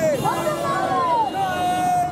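A group of men shouting slogans in chorus, the voices gliding up and down and ending on a long held call in the second half.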